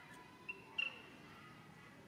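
Two short, high chirps: a brief one about half a second in and a louder, sharper one just under a second in, over a faint steady outdoor background.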